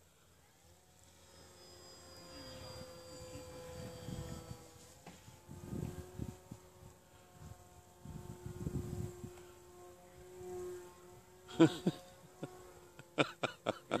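Distant buzzing drone of an RC model airplane's motor and propeller high overhead, its pitch dropping about five seconds in as the plane manoeuvres, with a few low rumbles underneath.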